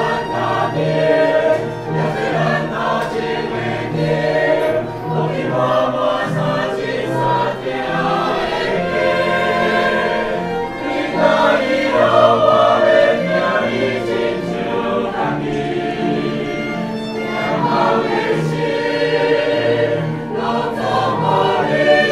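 Church choir singing a hymn in parts, with a violin accompanying.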